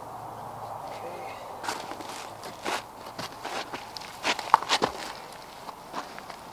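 Footsteps and scuffing on rocks and plastic pond liner: a run of short, irregular crunches and scrapes starting a couple of seconds in, loudest near the end.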